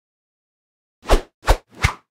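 Three short, deep thuds about a third of a second apart, starting about a second in: a logo intro sound effect.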